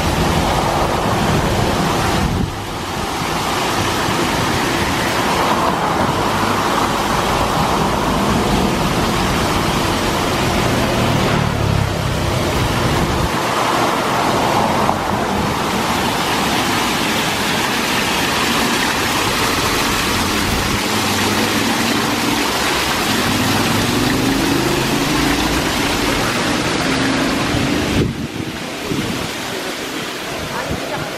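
Water running down a glass water-wall fountain: a steady rushing.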